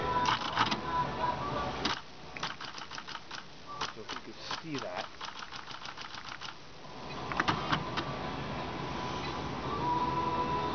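Royal TA electronic daisy-wheel typewriter typing: a fast run of sharp print-hammer clicks over several seconds as the carrier steps along. The print hammer is misaligned and strikes between the characters on the daisy wheel, so the machine prints vertical bars instead of letters.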